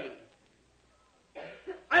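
A man's speech trails off into a near-silent pause, then a short cough about one and a half seconds in, just before the speech resumes.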